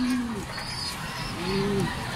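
Racing pigeons cooing in their loft: two low, arching coos, one at the start and one near the end, with faint high chirps in between.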